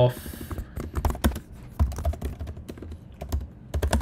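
Typing on a computer keyboard: an irregular run of key clicks with short pauses between bursts.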